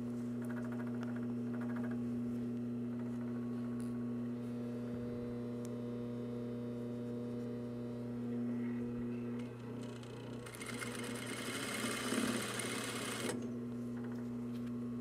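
Industrial single-needle sewing machine: the motor hums steadily, then about ten seconds in the machine runs for roughly three seconds of stitching through fleece before dropping back to the hum.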